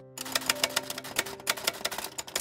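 Typewriter keystroke sound effect: a quick, uneven run of sharp clacks, several a second, as the letters of a title are typed out one by one.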